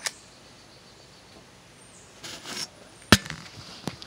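Handling noise: a short rustle, then one loud sharp click about three seconds in and a fainter click just before the end.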